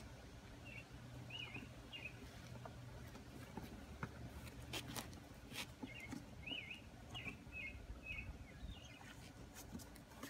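Small birds chirping in short repeated phrases, over a steady low hum. A few sharp clicks and scrapes come in the middle from the cardboard box's flaps being pulled open.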